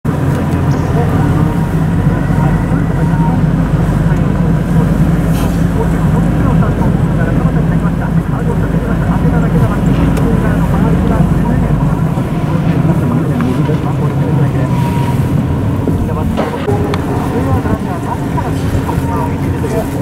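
Steady engine and road noise of a slow-moving car, heard from inside the cabin, with a deep rumble that drops away about halfway through.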